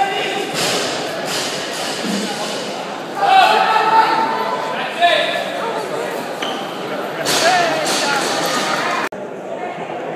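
Spectators shouting encouragement and cheering for a barbell lift, echoing in a large gym hall, with the loudest shouts about three to four seconds in; the sound cuts off abruptly about nine seconds in.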